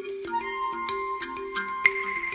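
Ambient relaxation music: soft low notes stepping through a slow repeating figure, dotted with light ticking clicks, with a high held tone coming in early and a second, higher one near the end.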